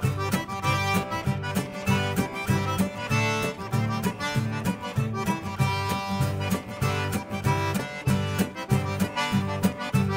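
Cajun two-step played live on a Cajun diatonic button accordion, with a strummed acoustic guitar keeping a steady, even beat underneath.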